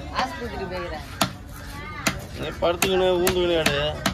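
Large knife chopping a fish into chunks on a wooden chopping block: about six sharp chops, roughly one every half-second to second. A person's voice talks over the chops and is loudest near the end.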